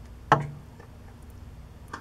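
A single sharp click with a brief low ring about a third of a second in, then a much fainter click near the end.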